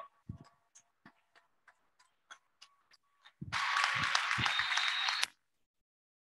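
Audience clapping: faint, scattered claps at about three a second, then fuller applause starting about three and a half seconds in, lasting under two seconds and cutting off suddenly.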